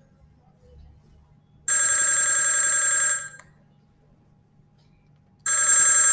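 Softphone incoming-call ringtone, a bell-like electronic ring: two rings of about a second and a half each, roughly four seconds apart, announcing an incoming call.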